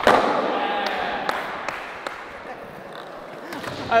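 A skateboard smacks down hard on a concrete floor, then its wheels roll across the concrete with a few light clicks, the rolling fading away over about two and a half seconds.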